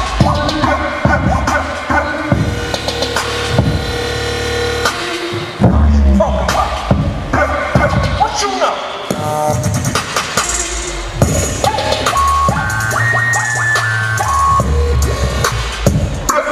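Loud electronic hip-hop dance music with scratch effects and heavy bass hits, played as the track for a roller dance routine.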